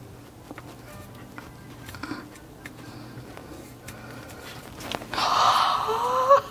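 Faint small clicks and taps of fingers handling a miniature doll head while pressing a glass eye into place with putty, then a loud breathy sigh near the end.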